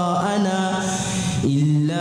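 A young man reciting the Quran in a melodic chant, holding long notes that bend and waver in pitch. Near the middle there is a short breath, and then a new held note begins.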